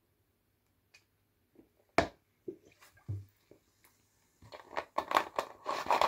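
Drinking from a plastic soda bottle, with only faint handling sounds. There are a few single clicks from about two seconds in, then a quick run of faint plastic crackles and clicks in the last second and a half as the bottle is lowered and handled.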